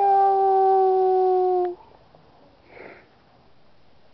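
A high-pitched voice drawing out one long "nooo" on a single, slightly falling pitch for nearly two seconds, then cutting off sharply, followed by a faint breath.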